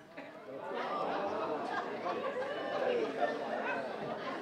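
Many voices chattering at once, overlapping with no single speaker standing out, swelling about half a second in.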